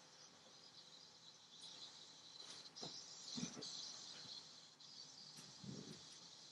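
Near silence outdoors among trees: a faint steady chirring of insects, with a few soft knocks about halfway through and again near the end.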